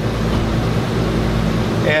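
Steady mechanical hum: a low droning tone with several pitches over an even hiss, unchanging throughout.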